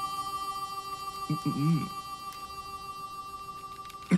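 Background score of steady, sustained held tones, like a suspense drone, with a short low vocal murmur about a second and a half in.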